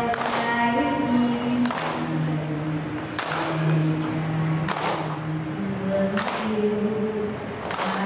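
Slow sung chant by a group of voices, moving in long held notes, with a sharp beat struck about every second and a half.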